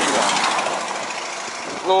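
Patrol car's power window winding down, the motor and the glass sliding through its rubber seal, a steady noise that fades over about a second and a half.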